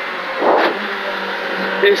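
Skoda Fabia R5 rally car's turbocharged four-cylinder engine running at speed, heard from inside the cabin, with a brief rushing burst of noise about half a second in.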